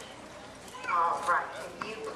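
A person speaking briefly, about a second in, over faint outdoor crowd murmur.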